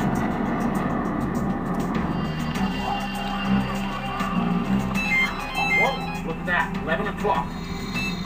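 A documentary soundtrack of music with a steady low drone. A few short electronic beeps of alternating pitch come about five seconds in, and indistinct voice sounds follow near the end.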